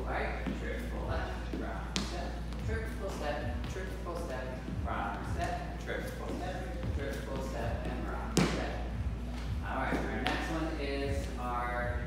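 Shoes stepping on a hardwood dance floor in swing footwork: a run of soft low thuds in uneven groups, the steps of triple steps and rock steps. A sharp click about eight seconds in is the loudest sound.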